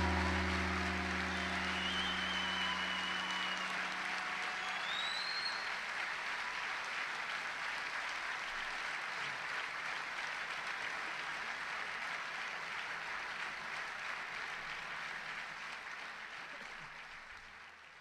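Concert audience applauding at the end of a live tabla piece, the last low notes of the music dying away in the first few seconds. A few high whistles rise over the clapping, and the applause fades out near the end.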